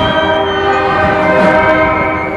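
Procession band playing a Guatemalan funeral march (marcha fúnebre), holding full, sustained brass chords.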